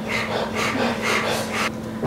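A person's rapid breathy panting, in short hissing puffs about three times a second, with no voice in it.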